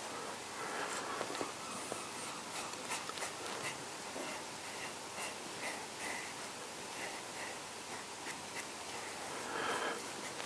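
A narrow-ended sponge rubbing over the cut edges of the swirl in a rough stoneware clay bowl, smoothing them: faint, short scratchy strokes.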